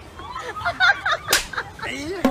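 A short burst of voice, then a single sharp slap a little after halfway: a hand smacking the head of a teddy-bear mascot costume.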